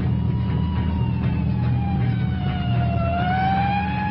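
Police car siren wailing, its pitch sliding slowly down and then back up, over the steady low rumble of a car engine.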